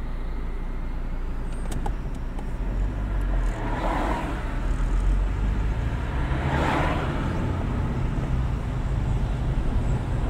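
Steady low drone of road traffic or a moving car, with two swells of passing-vehicle noise about four and seven seconds in.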